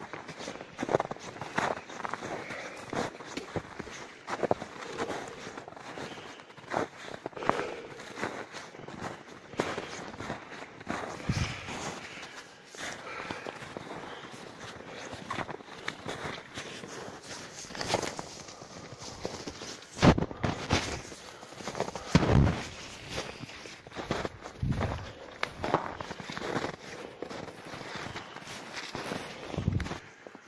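Footsteps of a person walking over shallow snow, rocks and dry grass on a mountain slope, in an uneven rhythm, with two louder thumps about two-thirds of the way through.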